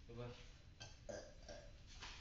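Faint, short vocal sounds from a person, four of them in quick succession.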